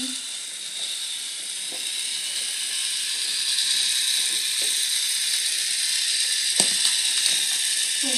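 Battery-powered toy train locomotive's small electric motor and gearbox whirring steadily as it pulls its wagons along wooden railway track, with a single click about six and a half seconds in.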